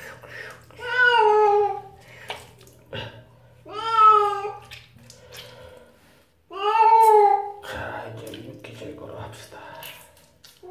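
Cat meowing three times while being handled during a bath: long calls that fall in pitch, about three seconds apart.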